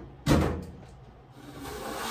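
Plastic soap trays set down on a counter with one sharp knock, followed near the end by a soft hissing rustle.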